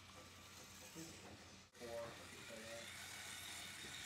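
Faint whir of a Lego robot's small electric motors as it drives across a tile floor pushing a ball, under distant talk. The sound briefly drops out just before halfway.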